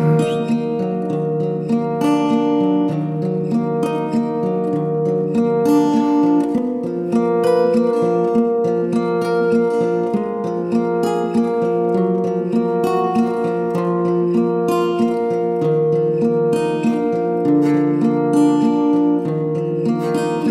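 Instrumental passage of a song: acoustic guitar with long held notes beneath, no singing.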